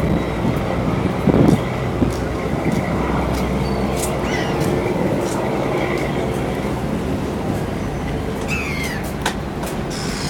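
Busy waterfront ambience carried by a steady low engine rumble, with faint background voices and a few light clicks. A short high call sounds about eight and a half seconds in.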